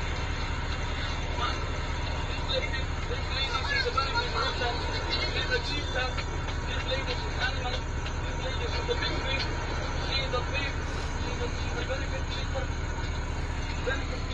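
Steady low rumble of a running vehicle heard from inside its cab, with faint voices over it.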